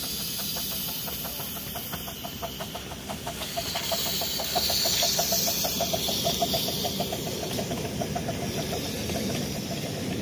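Miniature live-steam park-railway locomotive passing with its passenger train: a rapid, even beat of about five strokes a second, with a steam hiss that is loudest around the middle as the engine goes by.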